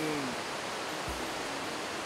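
Steady, even hiss of rushing water, with a man's brief falling hum at the very start.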